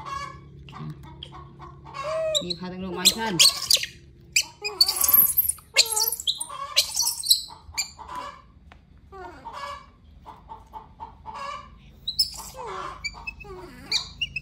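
Baby macaques giving shrill squeaks and squeals, with short chirping calls, during bottle-feeding. The calls come thickest a few seconds in and turn sparser toward the end.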